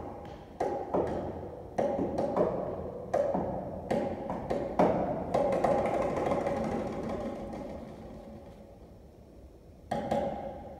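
Grand piano played with sharp, irregularly spaced accented chords, about ten strikes in the first six seconds. A held chord is then left ringing and slowly fades over the last four seconds.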